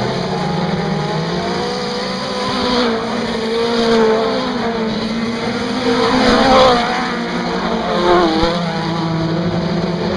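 A field of mini stock race cars with four-cylinder engines running hard on a dirt oval. Their engine notes rise and fall as the cars lift and accelerate through the turn. Three cars get louder as they pass close, at about four seconds, six and a half seconds (the loudest) and eight seconds.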